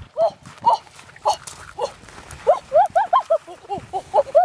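Dog yelping in a series of short, high, rising-and-falling yelps, about two a second at first and quickening in the second half.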